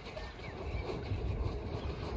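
Low, uneven rumble of wind on the microphone on an open golf range, with no swing or ball strike heard.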